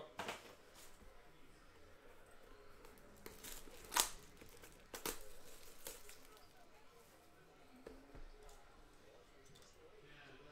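Soft handling of a shrink-wrapped cardboard trading-card box: rustling and crinkling of the plastic wrap, with a sharp click about four seconds in and a smaller knock about a second later.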